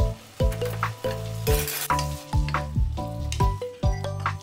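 Kimchi sizzling as it fries in a hot saucepan and is stirred with a wooden spatula, with a louder burst of sizzling about a second and a half in. Soft music with a steady beat plays underneath.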